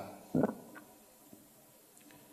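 A pause in a man's talk: the tail of his last word, then one brief soft throat or mouth sound from him about half a second in, followed by near silence.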